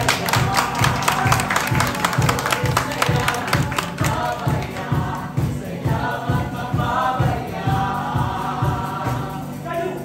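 Group of voices singing a song over a steady drum beat, with bright percussion strokes in the first half that drop out about halfway through while the singing and beat continue.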